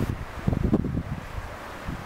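Wind buffeting the microphone outdoors in uneven low gusts, strongest about half a second to a second in, then dying down.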